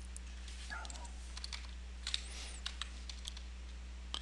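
Computer keyboard keystrokes: a scattered handful of short key clicks, the sharpest just after two seconds in, over a steady low electrical hum.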